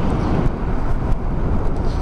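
Benelli Leoncino 800 Trail's parallel-twin engine running while the motorcycle cruises, heard under steady wind rush on the camera microphone.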